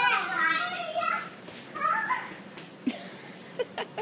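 A baby vocalising in high-pitched squeals and babble for the first second or so and again briefly about two seconds in, then a few short sharp taps near the end.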